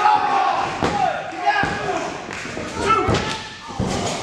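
Loud shouting and yelling in a hall, with a few thuds from the wrestling ring: one about a second in and two near the end, as bodies and feet hit the ring canvas.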